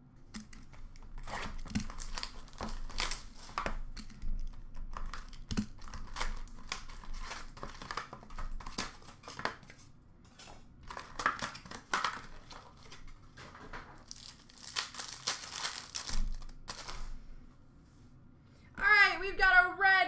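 A cardboard Upper Deck Synergy hockey card box and its packs being torn open, the wrappers crinkling in a run of irregular rustling bursts. A voice starts speaking near the end.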